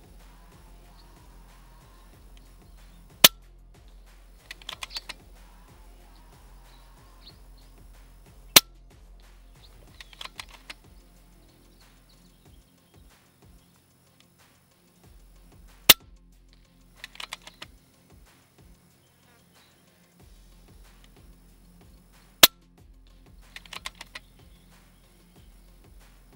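Four shots from a .177 PCP air rifle, each a single sharp crack, about five to seven seconds apart. About a second after each shot comes a short run of clicks as the action is cycled to chamber the next slug.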